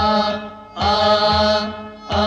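Kashmiri song: a voice sings two held, drawn-out phrases, the second starting just under a second in. Under the voice run a steady low drone and a low drum beat.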